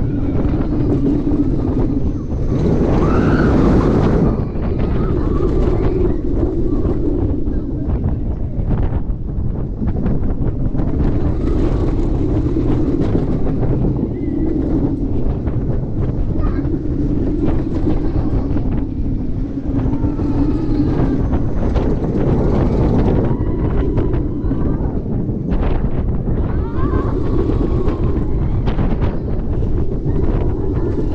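Wind buffeting the microphone of an onboard camera on a moving snowmobile-style roller coaster train, with the rumble of the ride running underneath. Riders' voices rise faintly over it here and there, and it is loudest a few seconds in.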